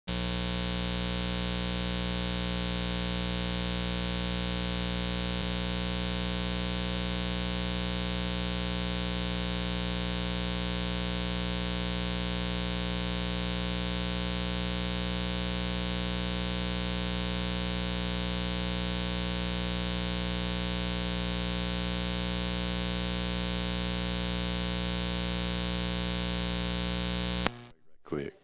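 Steady electrical mains hum, a loud buzz with many overtones at an unchanging level, in the audio feed. It cuts off suddenly near the end.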